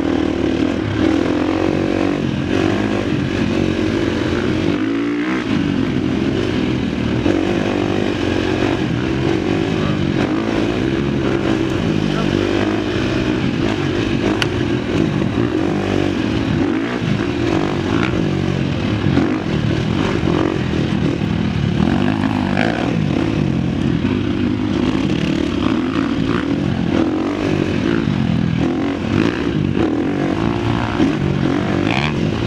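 Husqvarna FX350's single-cylinder four-stroke engine running while the bike is ridden, its pitch rising and falling as the throttle changes.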